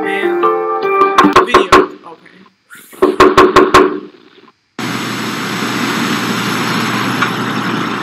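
Soundtrack of a scary-video compilation: music notes, then two quick runs of about five loud knocks each, a second or so apart. After a brief silence, a steady hiss-like noise starts about five seconds in.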